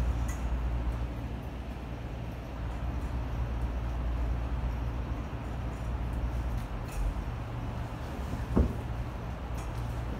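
A steady low background hum with faint noise above it, broken once by a short knock about eight and a half seconds in.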